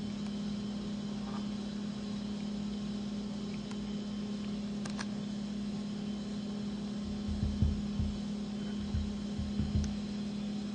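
A steady low background hum, with a few low rumbling bumps between about seven and ten seconds in.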